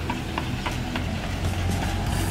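Puris frying in hot oil in a large iron wok, a steady sizzle with a few light clicks of the metal ladle, over a low steady rumble of roadside traffic.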